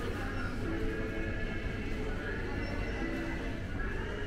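Supermarket ambience: background music and indistinct voices over a steady low rumble.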